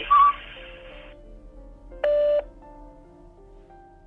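Electronic beeps from a phone call playing through a smartphone's speaker: a short high beep right at the start and a lower, buzzy beep of about half a second two seconds in, over faint drawn-out tones.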